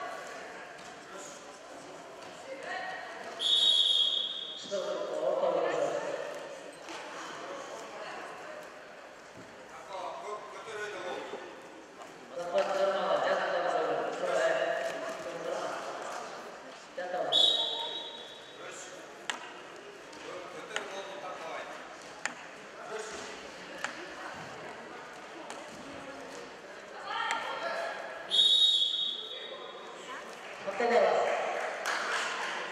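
Indoor sports-hall ambience with a mix of onlookers' voices and scattered thuds. Three short, high whistle blasts come through, one a few seconds in, one in the middle and one near the end.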